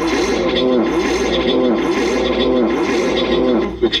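Heavily processed, looped voice recording smeared into wordless warbling: repeating rising-and-falling pitch arches over a steady low hum, until clearer speech returns near the end.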